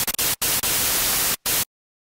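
Loud, even static hiss, broken by two brief dropouts, cutting off abruptly after about a second and a half.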